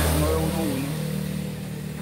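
Engine of a passing motor vehicle: a low, steady engine hum that slowly fades away.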